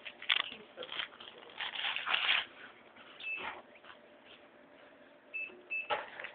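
Electronic cash register beeping as items are rung up: one short high beep about halfway through and two quick beeps near the end, among rustling and clatter of goods on the counter.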